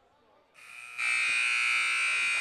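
A loud, harsh electric buzz: a hiss comes up about half a second in and turns into a steady, even buzz about a second in.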